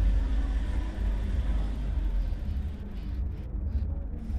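A steady low rumble of background noise, with no distinct events.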